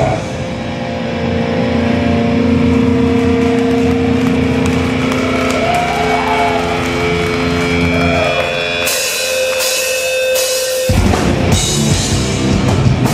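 Live heavy hardcore band through a loud PA: distorted guitars and bass hold long ringing chords over drums and cymbals. Near the end the low end cuts out suddenly and the full band crashes back in.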